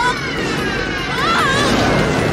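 Film soundtrack of a moving freight train, its rumble running under music, with a wavering, siren-like pitched sound at the start and again about a second and a half in.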